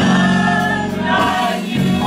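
Gospel choir singing, holding a sustained chord for about a second before moving into the next phrase.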